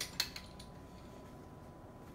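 Two light clicks of plastic toy parts being handled, at the very start and a fraction of a second later, then quiet room tone.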